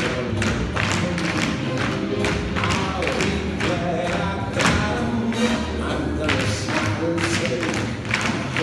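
A recorded song with singing plays, with tap shoes clicking sharply on the stage floor several times a second along with it.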